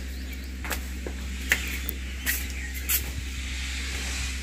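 Footsteps: four sharp steps at an even walking pace, under a second apart, over a steady low rumble.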